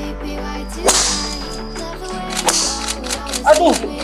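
Golf tee shots: two sharp swishing cracks of a club striking the ball, about a second in and again about two and a half seconds in, over background music with held notes. A voice calls out near the end.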